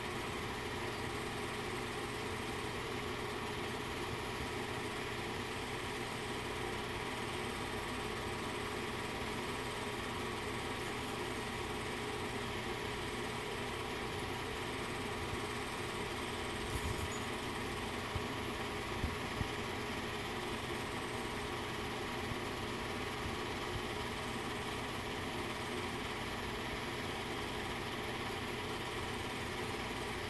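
Steady whirring hum of a running film projector's motor and fan, with a few faint clicks a little past halfway.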